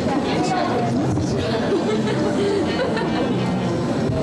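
Many people chattering at once in a theatre auditorium, overlapping voices with no single speaker standing out.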